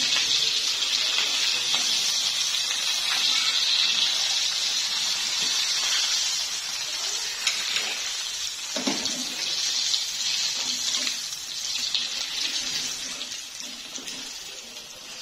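Cutlets deep-frying in hot oil: a steady, crackling sizzle that slowly dies down over the last few seconds. A few light knocks of a wire skimmer against the pan as the cutlets are lifted out.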